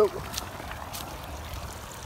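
Water running out of a pond-draining pump's discharge hose onto leaf-covered ground: a faint, steady trickle.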